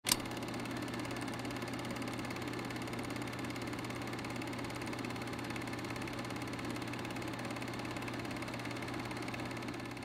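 Old film projector running, a steady rapid mechanical clatter over a low hum, starting with a sharp click and fading out near the end.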